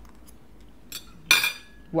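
A metal fork clinks once against a plate about a second and a half in, with a short ringing tail, after a faint tick just before.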